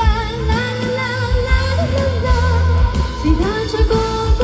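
A female pop singer sings a wordless 'la la la' line with vibrato over a live band, with steady bass and drums, recorded live at a concert.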